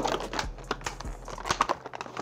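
Clear plastic packaging tray being handled, crinkling and giving a quick run of small clicks and taps.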